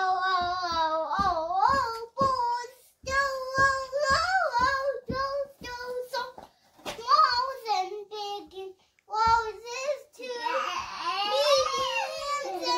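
A young boy singing a song on his own in a high child's voice, unaccompanied, in short phrases with long held notes.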